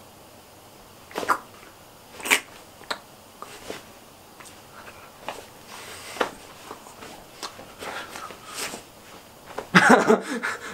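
A boy's held-in laughter: short bursts of breath through the nose and mouth a second or so apart, with a louder burst of laughter near the end.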